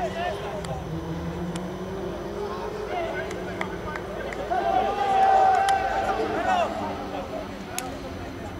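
Several men shouting across a football pitch, the loudest a long drawn-out call about five seconds in, over a steady low hum.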